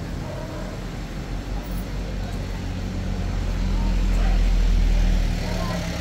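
A motor vehicle's engine, a low steady rumble that grows louder to a peak a little over four seconds in, then eases off near the end.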